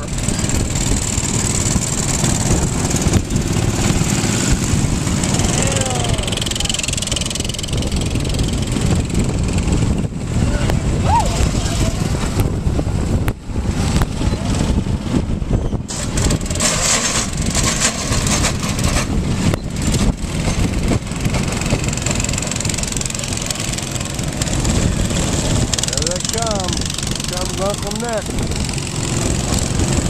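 Several small go-kart engines running together as the karts pull away from the start and go round the track, with voices calling out now and then.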